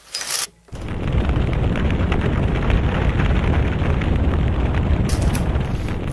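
Window blinds clattering briefly as they are pulled open. Then, under a second in, a loud, steady, deep rumble sets in and holds, like a blast or a blaze; it has the muffled top of an added sound effect.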